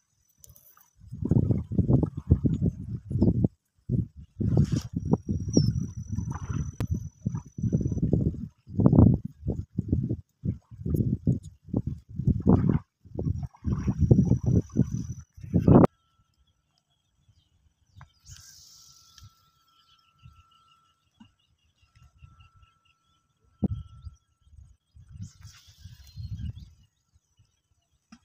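Wind buffeting the microphone in irregular low gusts for about the first half, then an abrupt drop to a much quieter outdoor background with only faint brief sounds.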